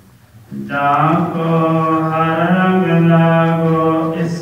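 A man's voice chanting Gurbani slowly through a microphone in long held notes, starting after a brief pause about half a second in.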